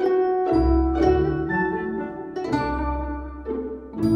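Instrumental music: ringing plucked notes on Chinese plucked-string instruments with orchestral string pizzicato, and a deep bass note sounding twice.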